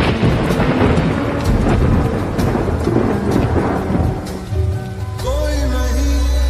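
A thunderclap and rain sound effect laid into slowed lofi music: a sudden crack at the start, then a noisy wash that fades over about five seconds, until a deep bass and a singing voice come back in near the end.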